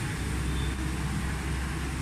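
City street traffic: a steady low rumble and hiss of passing vehicles on wet roads.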